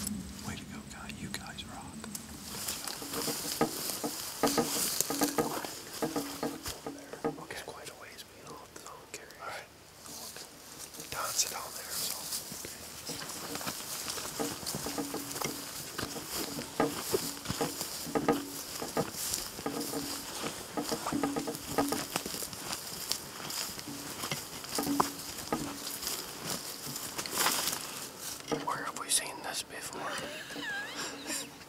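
Footsteps swishing and crackling through tall grass and brush, with clothing rustling, in an irregular run of small crunches.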